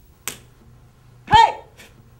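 A karateka's kiai: one short, loud shout with a falling pitch about a second in. It is preceded by a sharp snap, with a fainter click near the end.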